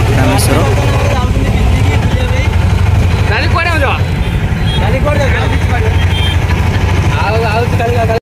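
Steady low engine rumble and road noise heard from inside a bus, with passengers' voices talking over it in snatches.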